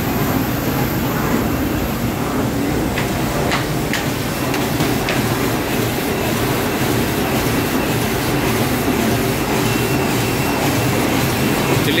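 Automatic lead-edge-feed die-cutting machine running 5-ply corrugated board at about 3900 sheets an hour: a steady, dense mechanical clatter, with a few sharp clicks about three to five seconds in.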